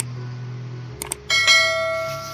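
Mouse-click sound effects, then about a second and a half in a bright ringing bell chime that slowly fades: the sound effect of a subscribe-button and notification-bell animation.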